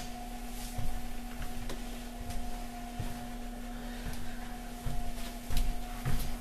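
Electric potter's wheel motor humming steadily, with a few faint knocks and clicks of tools being handled.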